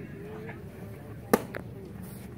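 A pitched baseball hitting the catcher's leather mitt: one sharp smack about a second and a third in, followed by a fainter click, over faint background voices.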